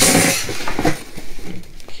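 Cardboard and polystyrene packing peanuts rustling and scraping as an inner box is pulled out of a double-boxed shipping carton: a loud burst of rustling at the start, then quieter shuffling.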